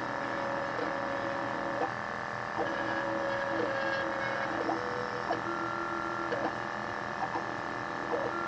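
Hyrel Engine HR 3D printer's stepper motors whining in short held tones that change pitch with each move, with quick rising sweeps between moves, as the head lays down the first layer. A steady hum runs underneath.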